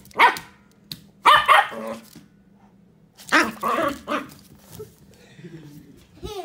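Small fluffy white dog barking in three loud bursts.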